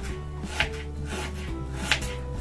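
Kitchen knife slicing peeled ginger root into thin rounds on a wooden cutting board. There are a couple of sharp strokes as the blade meets the board, the clearest just over half a second in and near the end.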